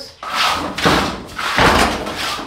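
Three loud, noisy clatters or bangs, about half a second apart, like objects being knocked or moved about.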